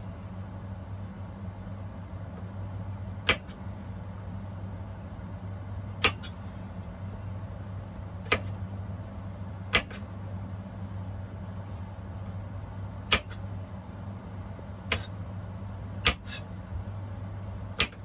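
Kitchen knife chopping small potatoes on a cutting board: about eight separate sharp strikes, irregularly spaced one to three seconds apart, over a steady low hum.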